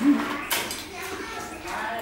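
Spoons and chopsticks clinking against bowls as people eat, with one sharp click about half a second in; faint voices underneath.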